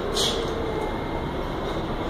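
R68A subway train standing at the station platform: the steady rumble of the stopped cars' equipment, with a short air hiss just after the start.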